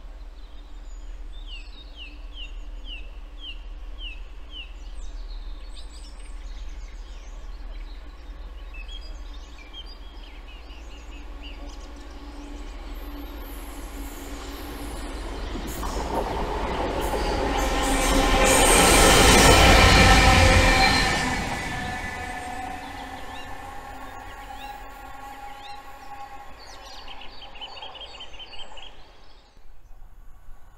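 Two Class 66 diesel-electric locomotives with EMD two-stroke V12 engines, running coupled without a train, passing by. Their sound builds from about halfway through, is loudest around two-thirds of the way in, then fades, leaving a fainter lingering whine for a few seconds.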